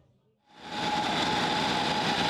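Small engines on portable rail-track machines running steadily with an even whine, starting about half a second in after a brief silence.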